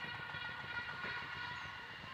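A horn sounding one long, steady note, held for about two seconds and fading near the end.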